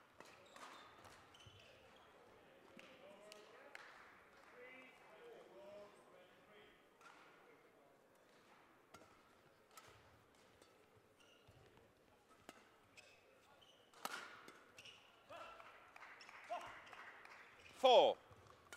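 Badminton rally: sharp racket strikes on the shuttlecock and footfalls and shoe squeaks on the court floor, getting busier in the last few seconds. Faint voices murmur in the background, and a voice calls out loudly right at the end.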